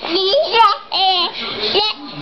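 A toddler babbling in a high, sing-song voice: about four short vocal sounds that swoop up and down in pitch, with brief pauses between them.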